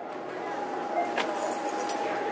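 Steady background noise of a large shop, with a faint continuous tone and a couple of light clicks near the self-checkout.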